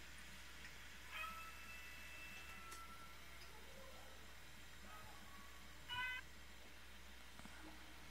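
Two faint high calls from a small animal: a held one about a second in, and a short, rising one near six seconds, over a low room hum.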